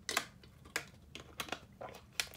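A thin plastic water bottle crinkling in a quiet series of short, sharp crackles as someone drinks from it.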